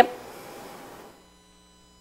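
A woman's brief "yep" at the start, then a soft hiss that fades out within about a second, leaving near silence with a faint steady electrical hum from the microphone system.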